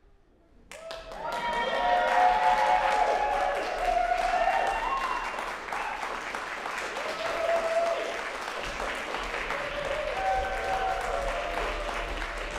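Audience applauding, with shouts and cheers rising over the clapping, starting about a second in.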